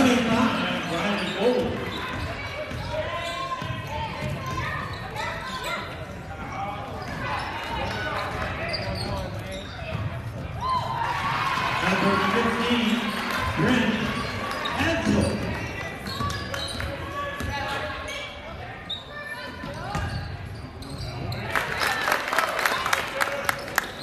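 Basketball game sounds echoing in a large gym: a ball bouncing on the hardwood court, with indistinct shouting and chatter from players, coaches and spectators. A rapid run of sharp taps comes near the end.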